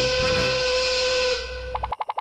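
Steam-whistle sound effect: one steady whistle over a hiss that bends down and fades about one and a half seconds in, followed near the end by a quick run of short clicks.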